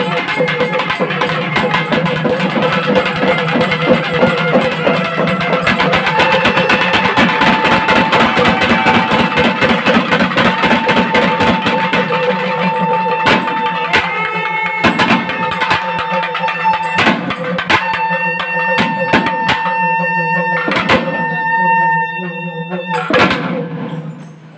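Naiyandi melam temple band playing: thavil barrel drums beat fast under a reed pipe holding long notes. From about halfway the drumming thins to separate loud strokes while the pipe keeps sounding, and the music softens near the end.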